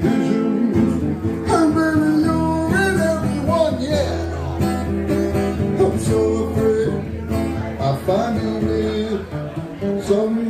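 Acoustic guitar strummed in steady chords, with a man singing over it in places.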